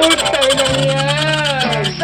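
Pop ballad music: a singer holds a long, wavering note over guitar accompaniment, with a steady low bass note coming in about a third of the way through.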